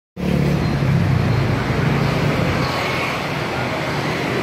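Road traffic noise: cars passing on a city street, with a low engine hum that is loudest in the first two seconds.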